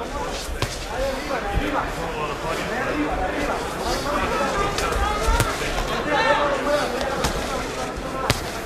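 Boxing arena crowd: a continuous mass of overlapping voices and shouts. Several sharp smacks of gloved punches land at scattered moments.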